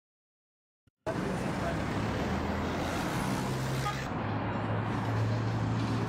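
Silence, then about a second in, city street ambience cuts in suddenly: steady traffic noise with a low engine hum and people's voices.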